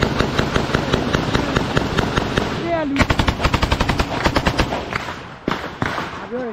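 Continuous automatic small-arms fire in a firefight: overlapping bursts and single shots, with a rapid even run of about eight shots a second through the middle.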